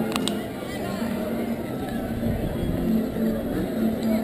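Crowd of people talking in the background, with faint music of held notes and two sharp clicks about a tenth and a quarter of a second in.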